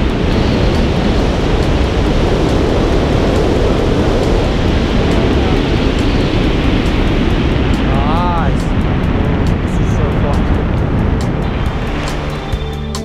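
Wind rushing over the microphone of a tandem skydiver's wrist-mounted camera during the parachute descent, loud and steady. About eight seconds in there is a brief pitched sound that rises and falls.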